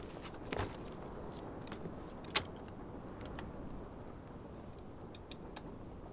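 Faint rustling and light metallic clicks from a soldier's plate armour as he moves, with one sharper click about two and a half seconds in.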